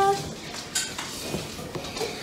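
A girl's sung note ends just after the start. Then comes a pause with faint light clicks and clinks of household clatter.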